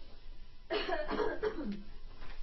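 A person coughing and clearing their throat. A sudden harsh cough comes about two-thirds of a second in, followed by throaty, voice-like sounds.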